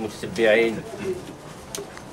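A man's voice speaking Arabic: one short utterance about half a second in, then a pause.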